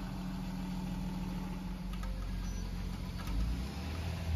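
A UPS delivery truck's engine idling steadily under falling rain, with a deeper rumble swelling near the end.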